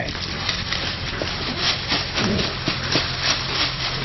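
A thin plastic bag crinkling and rustling as it is handled and a whole fish is slid into it, in a run of irregular crackles, over a steady low hum.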